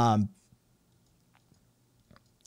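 A man's short "um", then near silence broken by a couple of faint clicks.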